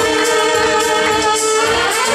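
Loud party music: a live saxophone playing long held notes over a backing track with singing.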